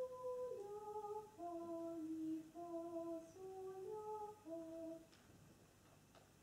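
Soft, steady notes sounded in two parts, a short phrase of about ten notes stepping up and down for some five seconds, giving a choir its starting pitches before an a cappella song.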